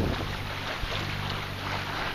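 Sailboat's engine running steadily as a low, even hum, under a steady hiss of wind and water.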